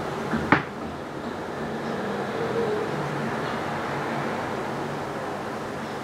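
Steady background hum and hiss of room noise, with one short click about half a second in.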